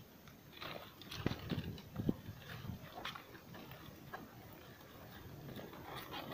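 Footsteps on dry ground among pineapple plants, with the crunch and rustle of dry leaves and straw: a series of light, irregular crunches and clicks that thin out in the later part.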